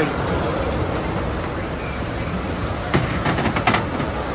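Steady midway arcade din, with a quick run of about five sharp clacks about three seconds in from the balls of a roll-a-ball race game being rolled up the lane and dropping into the target holes.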